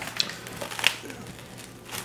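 A slice of pizza being pulled from its cardboard box and set on a plate: quiet rustling and handling noise with two short clicks, one just after the start and a sharper one a little before the middle.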